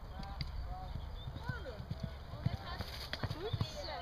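A pony's hooves thudding on a sand arena as it goes past at a brisk pace, a series of irregular dull beats that grows clearer in the second half.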